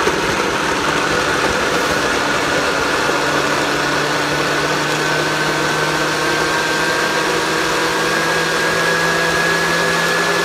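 A blender running steadily and loudly, puréeing cashews into a creamy sauce. Its motor whine creeps slowly higher in pitch.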